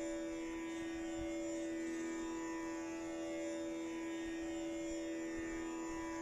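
Tanpura drone sounding steadily on one held pitch, its overtones shimmering.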